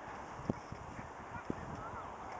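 Russell terrier digging in loose soil with its forepaws: continuous rough scratching with irregular soft thuds of earth, and two sharper thumps about half a second and a second and a half in.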